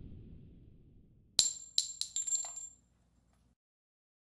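Logo intro sound effect: the tail of a low boom dies away, then about a second and a half in comes a quick run of about five sharp metallic clinks with a brief high ring, like small metal objects dropping onto a hard surface.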